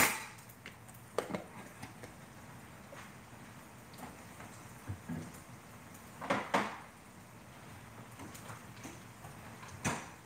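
A few faint knocks and one short clatter about six seconds in over quiet room tone: small kitchen things being handled on a countertop.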